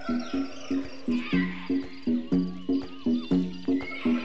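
Background music with a steady beat: short pulsing notes about three a second, with a deeper note joining about a second in and returning roughly once a second.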